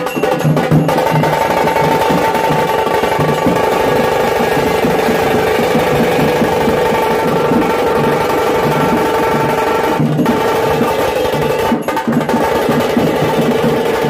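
A street drum group plays dhol barrel drums and stick-struck side drums in fast, steady, rolling rhythms with a pounding low beat. A sustained held tone sounds over the drumming from about a second in.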